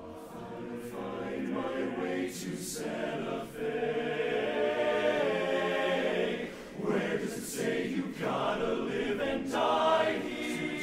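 Men's barbershop chorus singing a cappella in close harmony, swelling louder over the first few seconds, with brief breaths between phrases.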